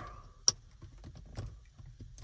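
Wiring harness cable being handled near the rear-view mirror: one sharp click about half a second in, then a few faint light ticks.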